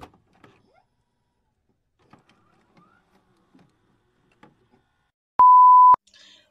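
Sparse faint clicks and small electronic blips, then near the end a loud, steady single-pitch electronic beep lasting about half a second that cuts off suddenly.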